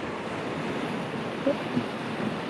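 Ocean surf washing against a rocky shore, a steady rush of waves, with some wind on the microphone.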